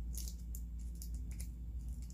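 Tape crinkling and rustling as it is wrapped around the handles of two plastic spoons, a few faint short rustles near the start and near the end, over a steady low hum.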